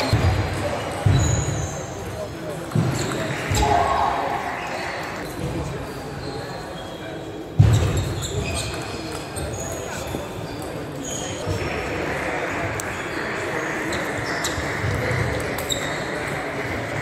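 Table tennis balls clicking off bats and tables in a large, echoing sports hall, with background chatter. Several heavier thumps stand out, the loudest about seven and a half seconds in.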